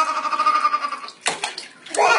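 A baby's long, drawn-out high squeal, its pitch sliding slightly down, that stops about a second in. A short splash or two of water in a plastic baby bath follows, and another squeal starts at the end.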